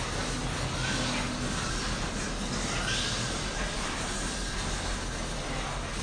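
Steady room ambience: a low hum under an even hiss, with no distinct events.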